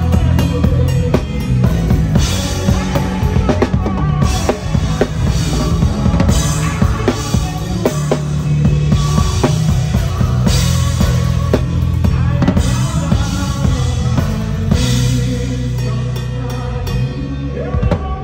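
An acoustic drum kit played live in a busy groove, with kick and snare strokes and cymbal crashes washing in every few seconds over sustained low bass notes from the band. The playing thins out near the end.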